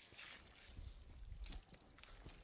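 Faint water from a garden hose splashing into a plant container, over a low rumble.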